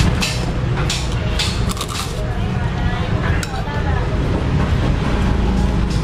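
A steady low traffic rumble, with background music's regular ticking beat in the first couple of seconds and again near the end, and some faint background voices.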